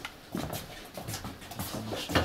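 Several light knocks and shuffling as people move about and shift benches in a small room, with a brief soft vocal sound near the end.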